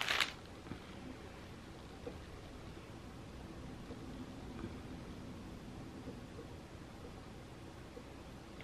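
Mostly quiet room tone with faint, scattered taps and rustles of glass jar candles being handled and set down on a cloth-covered table. A brief sharp noise comes right at the start.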